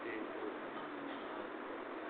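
Steady background hiss with a faint cooing bird call in it.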